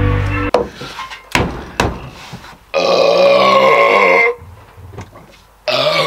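A man's long, loud belch after downing a glass of lager, lasting about a second and a half, with a shorter belch near the end. Two sharp knocks come before it, and music cuts off about half a second in.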